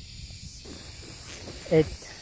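Steady high-pitched hiss of insects in the garden vegetation. A single short falling spoken syllable comes near the end.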